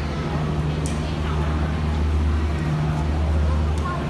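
Steady low mechanical drone, with faint voices of people talking in the background.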